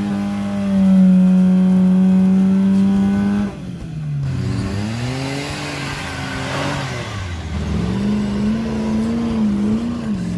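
Off-road 4x4 engines working hard on steep dirt climbs, in short cuts. First an engine holds a steady high-revving note for about three and a half seconds and then cuts off suddenly. Next an engine's revs drop and rise again under a hiss of a wheel spinning in dirt, and near the end an engine note wavers up and down.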